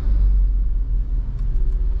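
Steady low rumble of a car being driven slowly, heard from inside the cabin: engine and road noise.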